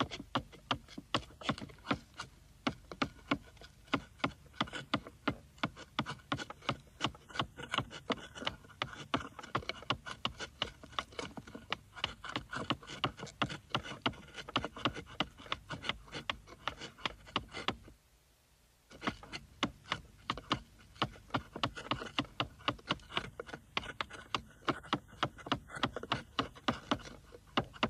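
Mallet strikes driving a Japanese carving chisel into wood, a steady run of sharp taps about three a second. The taps pause once for about a second, roughly two-thirds of the way through.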